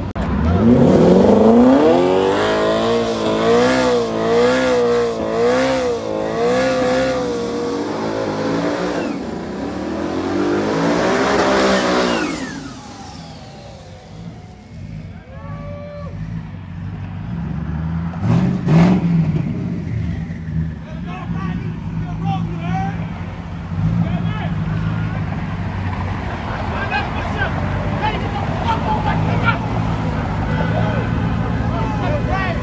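Ford Mustang engine revved hard from low to high revs and held there with the pitch wavering up and down for several seconds, amid tyre smoke from a burnout. It climbs once more and drops off about twelve seconds in. Another sharp rev comes near nineteen seconds, followed by a steady low rumble of engines idling.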